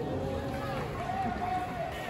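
Footballers' voices shouting on an open pitch: two long, drawn-out calls, the second higher than the first.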